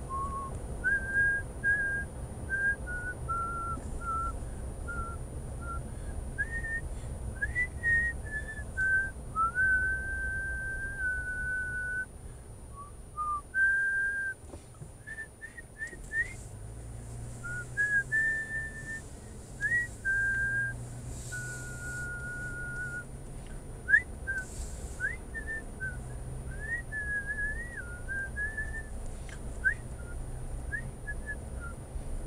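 A person whistling a tune: a string of held notes with short slides between them, heard inside the car over the low hum of driving. A single sharp click sounds partway through.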